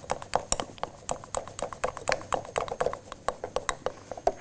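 A metal spoon stirring half-melted white chocolate in a glass measuring jug, knocking and scraping against the glass in rapid, irregular clicks several times a second.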